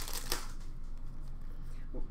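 Trading cards handled and shuffled through by hand: a short, sharp rustle about a third of a second in, then soft card-on-card sliding.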